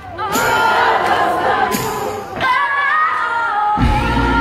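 A concert crowd singing the melody along with almost no accompaniment, a mass of voices under a few clearer sung lines. Just before the end the band's bass and drums come back in.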